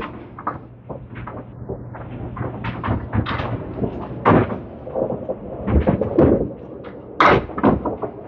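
Candlepin bowling alley clatter: a run of knocks and clacks from balls and wooden pins. The loudest crash of pins comes about seven seconds in.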